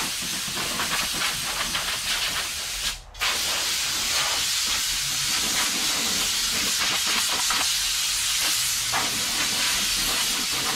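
Compressed-air blow gun on a shop air hose hissing steadily as it blows air over clothes and hair, with a short break about three seconds in when the trigger is let go.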